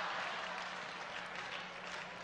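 Live comedy-club audience applauding after a punchline, slowly dying down.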